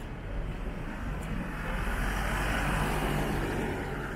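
A car passing close by: engine and tyre noise swell to a peak about two to three seconds in, then ease off.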